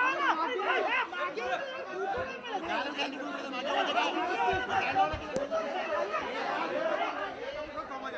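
Crowd chatter: many voices talking and calling over one another in a tight press of people.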